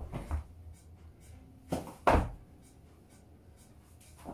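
Down-up (burpee-style) reps on a floor mat: a body dropping to the floor and rising again, with two thuds and scuffs about two seconds apart, the second louder.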